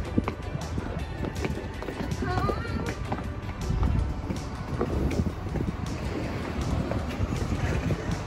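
Footsteps on a paved stone pavement, with wind rumbling on the microphone and music playing in the background.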